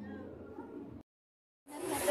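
Murmur of a crowd of people talking in an open hall. About a second in it breaks off into a short gap of dead silence, then comes back as louder chatter with children's voices.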